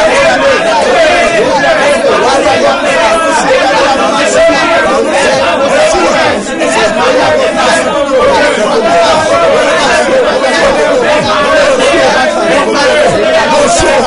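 Only speech: a man and a woman talking loudly at the same time, their voices overlapping without a break.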